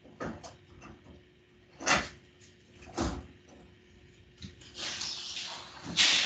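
A few short, sharp knocks and clatters, the loudest about two seconds in and another a second later, heard over a video call. Near the end a rising rush of rustling noise follows.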